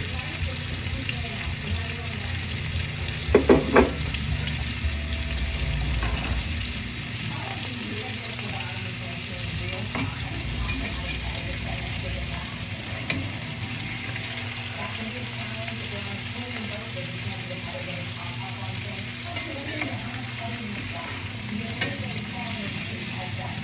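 Food sizzling steadily in a metal frying pan on a gas burner while a metal spoon stirs and scrapes it. A quick run of three loud knocks from the spoon against the pan comes about three and a half seconds in.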